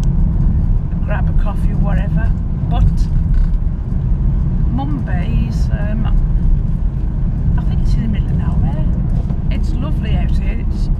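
Steady engine and road rumble inside the cabin of a moving car, with voices talking over it at intervals.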